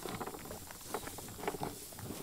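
American bison eating range cubes off a tabletop close up: irregular crunches and clicks as it bites and chews the feed cubes.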